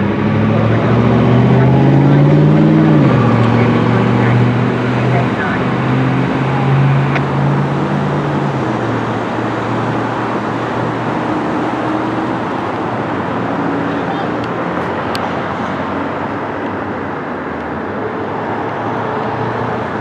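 Heavy fire-apparatus truck engine pulling away under load, its pitch dropping about three seconds in at a gear change, then fading out by about eight seconds in. Steady traffic and road noise is left after it.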